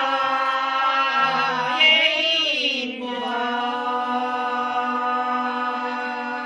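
Unaccompanied traditional Macedonian folk singing from Prespa, of the ritual or wedding-song kind. The melody bends in long phrases over the first few seconds, then one note is held steadily from about three seconds in.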